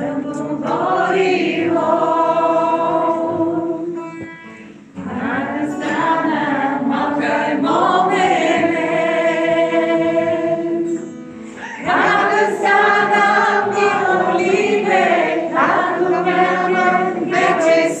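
A group of people singing together in long held notes, in three sung phrases with short breaks about four and eleven seconds in.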